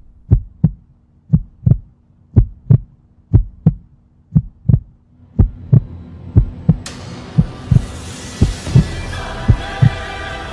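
Heartbeat sound effect: a steady double thump, lub-dub, about once a second. About seven seconds in, a hissing swell and a held musical drone rise in beneath it.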